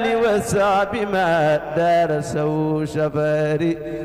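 A man's solo voice chanting a verse of Arabic devotional poetry in a slow, ornamented melody, holding wavering notes with short breaks between phrases.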